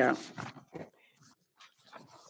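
A voice finishing a spoken word, then a quiet room with a few faint, brief sounds.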